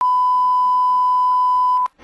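Broadcast colour-bars line-up tone: a single steady, loud, pure beep that cuts off suddenly shortly before the end.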